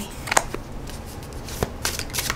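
Tarot cards being handled: a card drawn from the deck and laid down on a cloth, with two short, sharp card snaps a little over a second apart.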